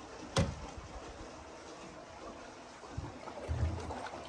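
Water streaming and swirling through the lock chamber as its gates open at lake level. There is a single sharp knock about half a second in.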